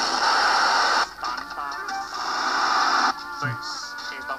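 A cartoon soundtrack playing through a speaker: a noisy rush of explosion sound for about the first second, then music and cartoon voices.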